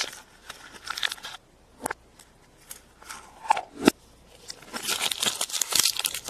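Plastic wrapping and a plastic toy capsule being handled: scattered soft clicks and crinkles, then denser crinkling and rustling in the last second or so.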